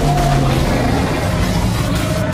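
Loud film-trailer score mixed with rumbling sound effects: a dense wash of noise over low held tones.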